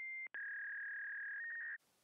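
Telephone line tones used as a sound effect: a short high beep, a click, then one long steady beep of about a second and a half that ends in a brief slightly higher tone and cuts off suddenly.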